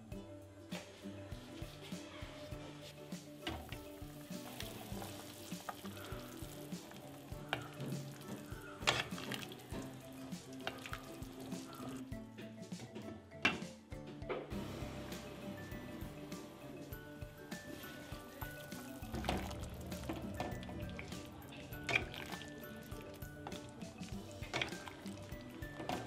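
Pot of pork curry simmering under a glass lid, bubbling with scattered small pops and clicks, over soft background music.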